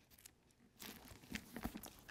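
Near silence, then from about a second in faint crinkling and soft crackles of thin Bible pages being turned.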